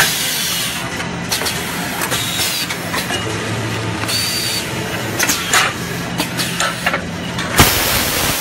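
Toilet roll rewinding and wrapping machinery running: a steady low hum with repeated sharp clacks and a few short bursts of hissing noise.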